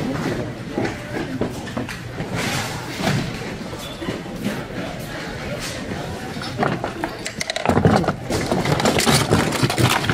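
Plastic toys knocking and clattering as a hand rummages through a full bin and lifts one out, with other people's voices in the background, louder near the end.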